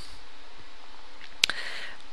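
Steady computer-fan noise picked up by an old headset microphone, still plainly heard through it. A single sharp click comes about one and a half seconds in.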